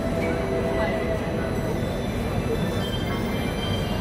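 Steady rumbling street noise, like heavy traffic passing, with traces of a backing track in the first second or so.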